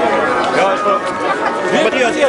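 Several men talking at once: overlapping crowd chatter with no single voice standing out.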